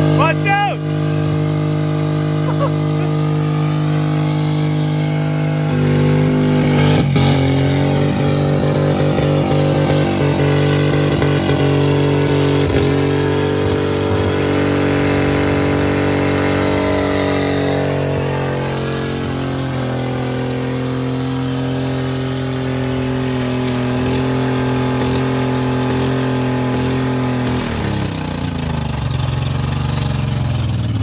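Chevrolet Equinox V6 engine held at high revs with the throttle wide open while it overheats, spraying coolant and steam, as it is deliberately run to destruction. The note climbs a little about six seconds in, steps down about two-thirds of the way through, and near the end the revs fall away as the failing engine starts to die.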